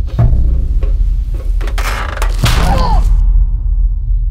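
Horror trailer sound design: a deep, steady drone under a run of heavy thuds and clattering hits, with a short pitched wail that bends down in pitch about two and a half seconds in. The higher sounds cut off just after three seconds, leaving only the low rumble.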